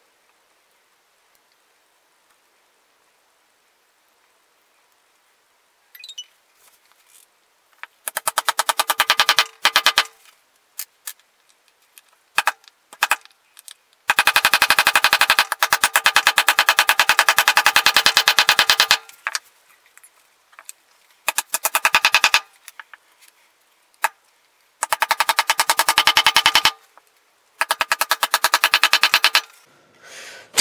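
Rubber mallet tapping walnut bow-tie keys home into glued recesses in a wooden slab. The blows come in quick, rapid runs, starting about six seconds in, and the longest run lasts about five seconds.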